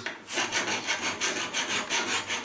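A hand file worked quickly back and forth, giving a steady rasping of about six or seven strokes a second.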